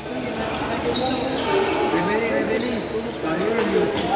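A few sharp badminton racket strikes on a shuttlecock, about one, two and three and a half seconds in, over people talking.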